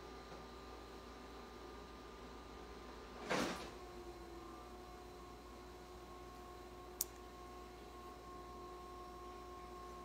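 An ice machine running with a steady hum of a few fixed tones, a machine that is labouring ("really struggling"). A short rustle comes about three seconds in and a single sharp click about seven seconds in.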